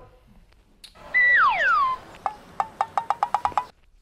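Cartoon-style comedy sound effect. About a second in, a whistling tone holds briefly and then slides down in pitch. It is followed by a quick run of about ten short pitched taps.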